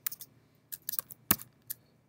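Half a dozen light, sharp clicks and taps from working a computer's input device to pick a colour in a drawing program, the sharpest about a second and a quarter in.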